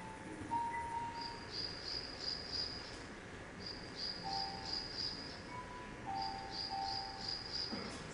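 Insects chirping in three pulsing trills, each about a second and a half long, with a few short, faint steady tones beneath.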